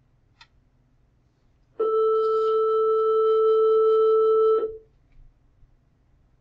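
A loud, steady electronic tone held at one pitch for about three seconds. It starts sharply about two seconds in and cuts off suddenly. A faint click comes just before it.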